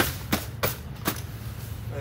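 Sharp clicks and taps from handling a fabric gear bag, four of them in the first second or so, over a steady low hum.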